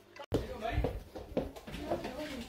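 Speech: a voice counting aloud, "eight… nine", starting just after a momentary dropout in the sound near the beginning.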